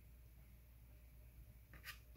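Near silence, with one short, faint scratch of a soft pastel stick stroked across the paper near the end.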